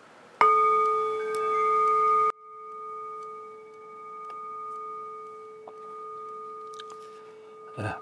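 A Buddhist bowl bell struck once, ringing with a clear, steady, bell-like tone. About two seconds in the ring suddenly drops in loudness, then carries on for several more seconds, slowly swelling and fading.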